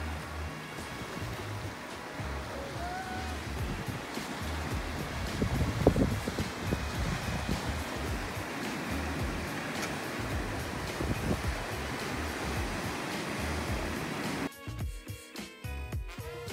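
Sea waves washing over a rocky shore, a steady rush with a louder surge about six seconds in, mixed under background music with a steady low beat. The wave sound cuts off near the end while the music carries on.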